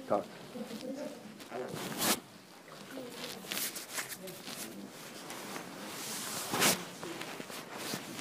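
Low murmur of quiet conversation in a small room, with two brief rustling noises, one about two seconds in and one later on.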